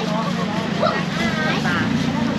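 A steady low engine drone, with voices talking over it.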